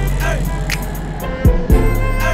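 Background music: a beat with percussion ticks and deep bass notes that slide down in pitch, two of them about a second and a half in.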